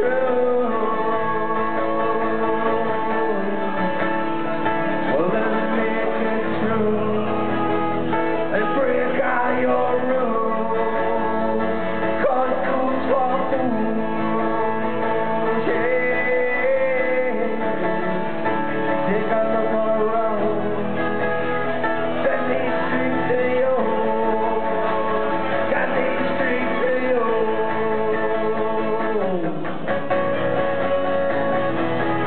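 A man singing while playing an acoustic guitar, a solo live song.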